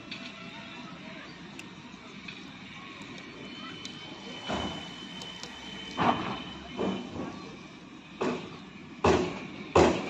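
Handling noise of a plastic feeding syringe and the hand-held camera: a low steady hiss, then from about halfway a run of short rustling knocks, loudest near the end.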